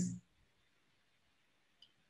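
Near silence with a single faint, short click near the end.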